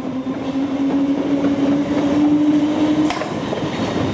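Approaching diesel locomotive, its engine note rising slightly in pitch and growing louder, over a rumble of train noise. A single sharp click comes about three seconds in.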